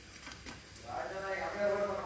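A woman's voice holding one drawn-out, steady voiced sound for about a second, starting about halfway in; the first half is quiet.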